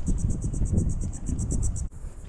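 Wind rumbling on the microphone, with a high, rapidly and evenly pulsing insect trill above it that cuts off suddenly near the end.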